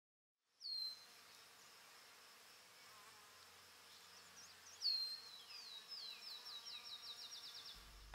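Faint high-pitched animal calls: one falling whistle about a second in, then from about five seconds a run of short falling notes that speed up.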